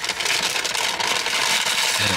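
Paper bag rustling and crinkling as it is handled, a dense crackly rustle with no pauses.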